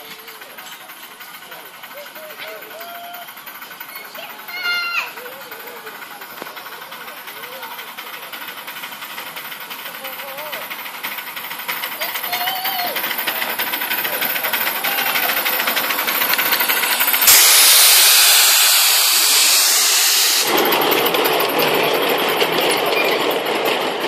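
Miniature railway steam locomotive with its passenger train, growing steadily louder as it approaches. A brief whistle sounds about five seconds in, and a loud hiss of steam lasts about three seconds near the end, loudest of all, followed by the train's running noise close by.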